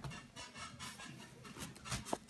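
Faint handling sounds: soft rustles and a few light taps as a knife and pineapple halves are handled on a wooden cutting board before chopping.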